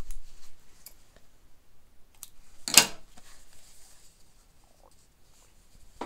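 A piece of woven sewing fabric being handled and lifted: faint scrapes and small clicks, with one short loud rustle about three seconds in.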